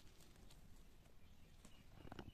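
Near silence with a few faint, light clicks from stiff plastic wire strands being handled against a woven bag.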